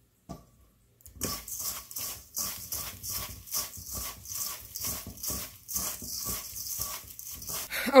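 Hands tossing and pressing calamari pieces in dry panko breading in a stainless-steel bowl: a rhythmic crunchy rustle, about two to three strokes a second, starting about a second in.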